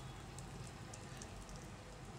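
Faint sizzling with light crackles from an egg dosa frying on a hot tawa.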